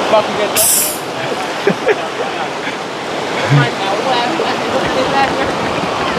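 Shallow rocky river rushing steadily over stones, with a short high hiss just over half a second in.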